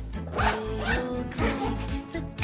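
Fabric backpack zipper pulled in two quick strokes, over background music.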